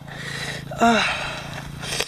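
A man's groan of pain, one falling "oh" about a second in, among breathy exhales, from a cyclist sore from a fall on rocky ground.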